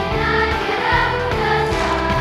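Children's choir singing a jazz number over instrumental accompaniment with a bass line.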